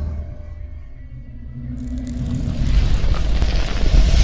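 Logo intro sting of music and sound effects: a low rumble that swells, with a rush of hiss coming in suddenly about two seconds in and growing louder toward the end.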